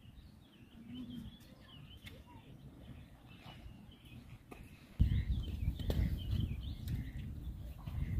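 Small birds chirping on and off over faint outdoor background noise. About five seconds in, a louder low rumbling noise starts abruptly and continues.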